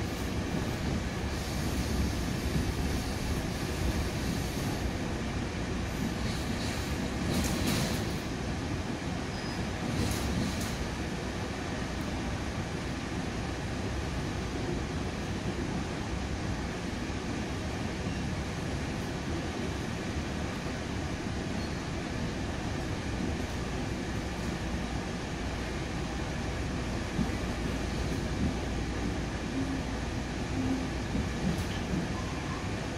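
A commuter train coach rolling along the track, heard from inside the passenger car as a steady rumble of wheels and running noise, with a few brief sharp sounds about a quarter of the way through.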